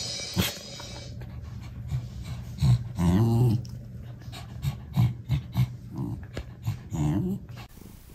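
Two dogs, a small black dog and a white fluffy dog, play-growling at each other with a low rumbling growl, broken by short vocal calls about three seconds in and again near the end.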